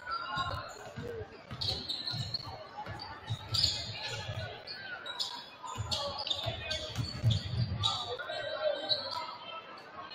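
Basketball being dribbled on a hardwood gym floor, bouncing about twice a second and echoing in the hall.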